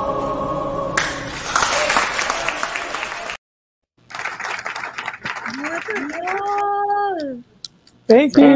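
A choir's held final chord ends about a second in, giving way to audience applause. After a brief dropout, scattered clapping comes over a video call, with one voice letting out a long call that rises, holds and falls.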